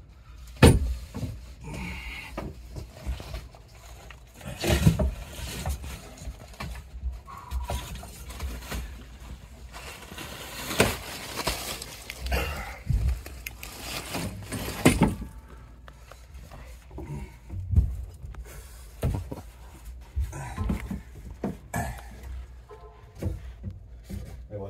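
Irregular knocks, bumps and rustling as a catch pole and a crawling body move against wooden attic joists and foil-wrapped flex ductwork, with the loudest bumps about five, eleven and fifteen seconds in.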